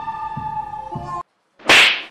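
Background music with held notes cuts off about a second in. After a brief silence comes one loud, sharp whip-like swish near the end, a comic slap effect for a hand smacking a student's head.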